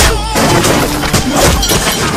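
Action-film fight soundtrack: music under a rapid series of sharp hits and smashing impacts from stick blows, with a deep hit right at the start.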